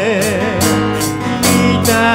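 A live band playing a song: strummed acoustic guitars, bass and a drum kit keeping a steady beat, with a held note wavering in vibrato at the start.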